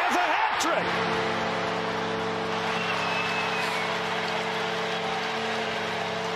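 Hockey arena goal horn for a Carolina Hurricanes home goal, sounding one long steady chord from about a second in, over a cheering crowd.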